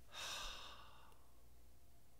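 A person sighs: one breathy exhale close to a microphone, lasting about a second and fading out.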